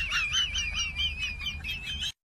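A bird warbling: a fast, wavering high trill that drifts slightly downward in pitch.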